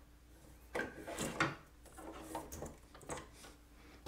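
Plastic ink cartridge being slid into its slot in an HP OfficeJet Pro 9125e print carriage and pushed home, with quiet scraping and a sharp click about a second and a half in as it locks into place. A few fainter ticks follow.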